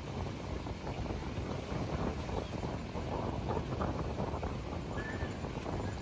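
Sea waves breaking and washing up the sand at the water's edge, with wind buffeting the microphone.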